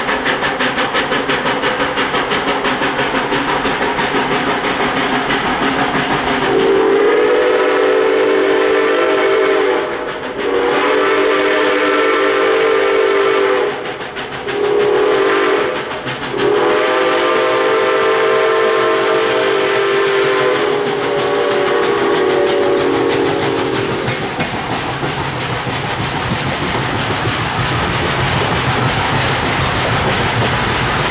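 Ex-Canadian National 0-6-0 steam locomotive #7470 working with quick, even exhaust beats. It then sounds its chime steam whistle as it passes: four blasts, long, long, short, long, which is the grade-crossing signal. Near the end the passenger cars roll by with wheel clatter.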